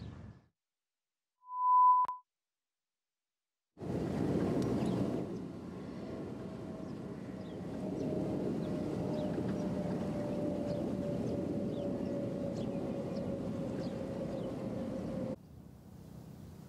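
A single short electronic beep at one steady high pitch, about half a second long, in otherwise dead silence. It is followed by open-air ambience with a faint steady hum that slowly falls in pitch.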